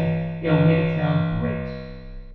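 Vocoder output: a sustained synthesizer chord shaped by a recorded spoken phrase, so the chord 'talks' with a ringing, diffused sound typical of MVocoder's dual mode. A new phrase starts about half a second in and fades away near the end.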